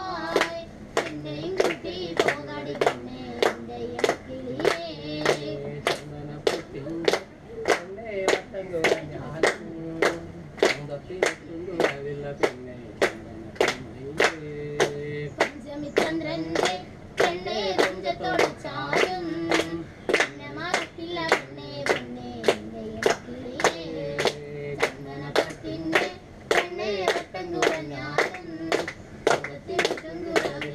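Group of voices singing a Kerala rice-field work song, a repeated chant, with hands clapping a steady beat about twice a second.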